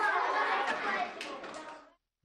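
A group of young children chattering together, many voices overlapping, fading out in the second half.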